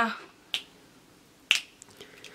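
A woman's sung note fades out, then two finger snaps about a second apart, between lines of her song.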